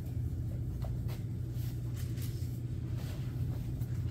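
A steady low hum in a quiet room, with a few faint soft rustles and clicks of Bible pages being turned.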